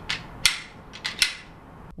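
Semi-automatic pistol worked by hand: the slide racked, a few sharp metallic clicks, the loudest about half a second in and two more close together about a second in.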